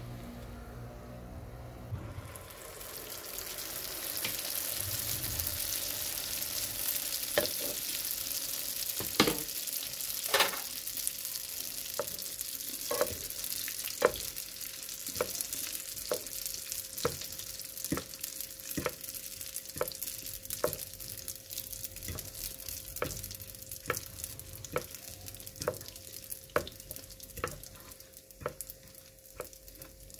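Hot oil sizzling in a non-stick frying pan as sfenj dough fries; the hiss comes up about two seconds in and holds steady. Sharp clicks sound about once a second through most of it.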